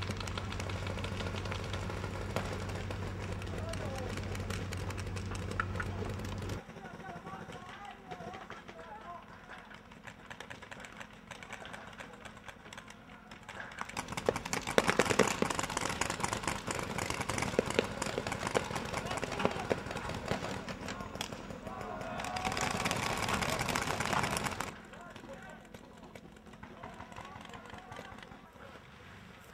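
Tracked armoured vehicle's engine running with a steady low hum, which cuts off abruptly after about six seconds. About halfway through, a loud, dense clatter of the vehicle's tracks and engine is heard as it passes close, for several seconds.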